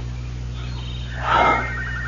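A person's short, muffled vocal sound, like a strained moan, about a second in during a struggle, over the steady low hum of an old recording.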